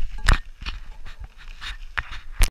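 A climber's heavy, quick breathing while hauling uphill on snow: short breaths every few tenths of a second, laboured from the effort of the climb.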